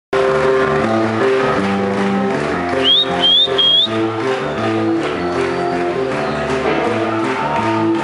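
Live rock band playing loud amplified music: distorted electric guitars and bass holding chords that change every half second or so. About three seconds in, three short rising high whistles cut through the band.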